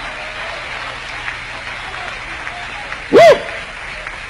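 Congregation applauding steadily, then a man's short loud shout about three seconds in.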